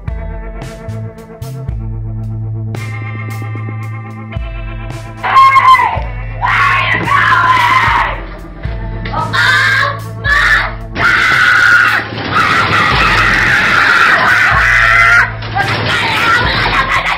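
Music with sustained keyboard notes over a steady low drone. From about five seconds in, loud, high screaming starts over the music and comes in several long cries to the end.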